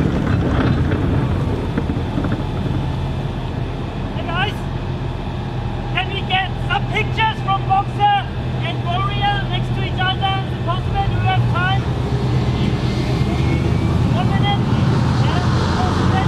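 Tracked armoured infantry vehicle driving on dirt, its engine running with a steady low drone. Short voice calls sound above it through the middle.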